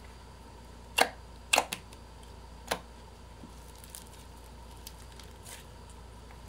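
Fingers pressing and poking slime in a compartment tray, giving short sharp clicks and pops of trapped air: one about a second in, two close together around a second and a half, and one near three seconds.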